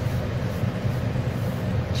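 Steady low hum of background machine noise, with a faint steady higher tone above it.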